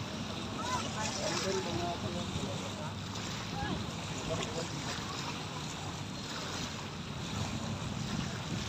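Wind on the microphone over small waves washing at the shore, a steady rushing wash. Faint distant voices come through in the first half.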